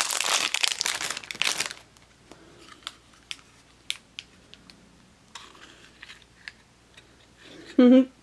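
Thin plastic packaging crinkling and tearing as a small toy pencil sharpener is pulled out of its bag, dense for about the first two seconds. Then it goes quiet, with a few light, separate plastic clicks as the Hello Kitty sharpener's case is handled and opened.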